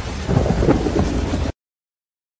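Loud rumbling noise with a heavy low end, cutting off abruptly about one and a half seconds in into dead silence.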